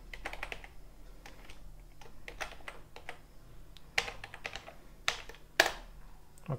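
Typing on a computer keyboard: irregular key clicks, with a few louder keystrokes in the second half.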